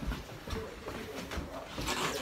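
Soft, irregular low thumps and rustle of a handheld phone being carried and moved about.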